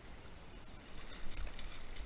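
A hooked fish splashing faintly and irregularly at the water's surface as it is drawn in, a little louder about a second in.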